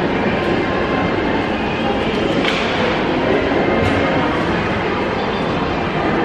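Steady, loud background din of a large indoor food court hall, with faint, indistinct voices in it.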